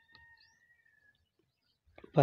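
Near silence, with faint bird chirps in the background and a thin held whistle-like tone that fades out about a second in.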